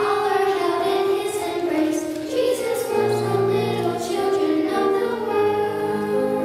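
Children's choir singing with electronic keyboard accompaniment, held notes over a sustained bass line.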